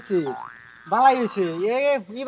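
A man's voice drawling a long sing-song call: the pitch falls steeply, then after a short pause it swoops slowly down and up again.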